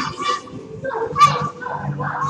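Children playing and calling out in a reverberant school gym, with one loud, brief, high-pitched cry a little over a second in.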